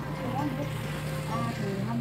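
Voices talking over a steady low hum, with a short phrase spoken near the end.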